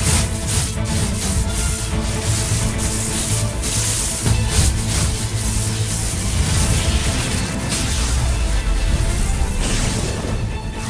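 Dramatic soundtrack music with a steady deep bass, overlaid with repeated bursts of hissing, rushing noise.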